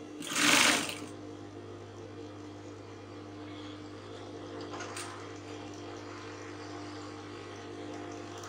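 Industrial sewing machine running with a steady motor hum while seams are stitched, with a short loud burst of noise in the first second and a faint click about five seconds in.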